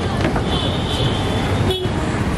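Street traffic noise with a vehicle horn sounding once, held for about a second shortly after the start.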